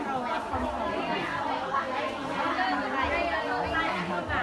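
Several people talking at once: busy market chatter among vendors and customers around a produce stall.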